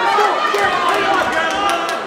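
Ringside crowd at a boxing bout, many voices calling out and talking over one another, with a few short sharp knocks among them.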